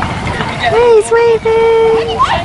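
A high-pitched human voice calling out: a short rising-and-falling call about halfway in, then one long held shout to the end.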